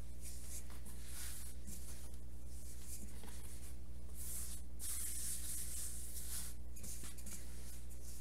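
Rolling pin pushed back and forth over pie crust dough on a floured board, a soft rubbing hiss that swells with each stroke, over a steady low hum.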